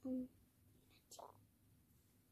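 A girl's short hummed "mm" of hesitation at the start while she tries to recall what comes next, then a faint breathy sound about a second in; otherwise low room tone.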